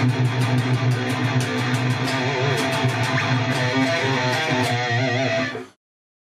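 Electric guitar played through Neural DSP's Fortin NTS amp-simulator plugin on a saturated high-gain preset, with a loaded Randall cabinet impulse response. It plays a distorted picked riff with a strong low end, and stops abruptly near the end.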